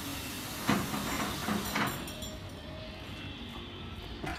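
A steam vapour cleaning machine's diffuser blowing a large volume of dry, high-temperature steam with a steady hiss. The high part of the hiss thins out about halfway through, leaving a lower rush.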